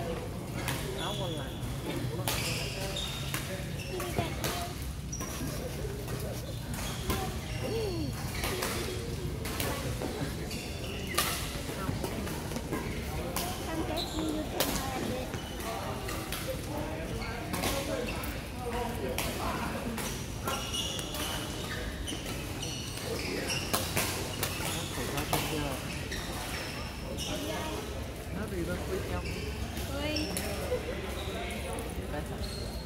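Badminton rackets striking shuttlecocks on several courts, giving sharp cracks at irregular intervals, mixed with short high squeaks and a background of distant players' chatter.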